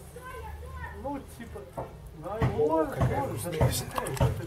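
People talking: quiet voices at first, getting louder past the middle.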